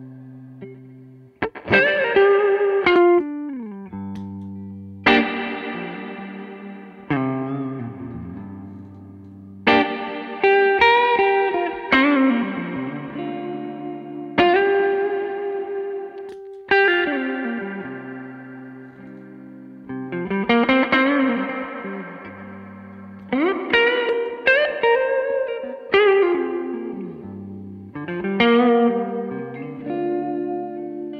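Clean-to-lightly-driven electric guitar from a sunburst Les Paul-style guitar, played through an amp with reverb pedals being compared in turn: bluesy chords and single notes, each left to ring out in a long reverb tail, with a few sliding notes.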